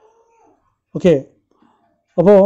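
A faint pitched call that rises and falls, then a short, louder voice-like sound with falling pitch about a second in.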